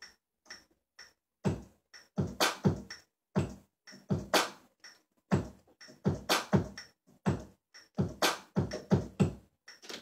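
Electronic drum sounds from a Yamaha MO6 synthesizer workstation, single drum hits played on the keys at about 124 BPM in a loose, uneven pattern, with small high clicks between the heavier hits.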